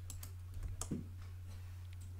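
A few faint clicks from the computer's mouse and keys being worked during a pause, over a steady low hum.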